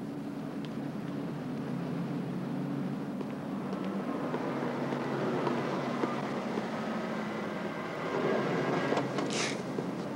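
City street traffic: a steady rumble of car engines and passing vehicles, swelling as a taxi draws up, with a short hiss about nine seconds in.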